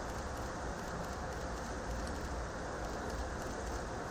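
Steady hiss-like background noise with a low hum underneath, even throughout.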